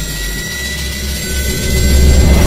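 Loud, dense low rumbling drone from a thriller film's score or sound design, with a few thin high held tones over it. It swells louder toward the end.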